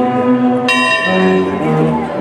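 A large bell strikes once, just under a second in, and rings on, the earlier stroke still sounding at the start. Under it a wind band holds sustained brass chords.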